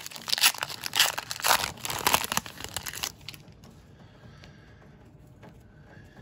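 A trading card pack's wrapper being torn open and crinkled in the hands: a dense run of crackling rustles for about three seconds, then only faint handling of the cards.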